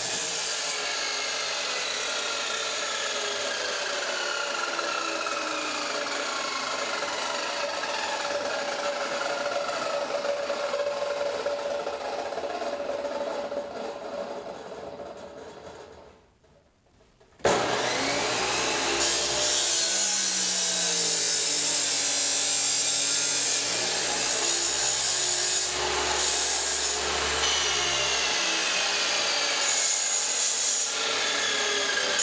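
Abrasive chop saw cutting galvanized steel flat bar, a gritty grinding with a whine that slowly falls in pitch as the wheel works through the metal. About 14 s in it fades away to near silence, and about 17 s in it starts again abruptly for a second cut.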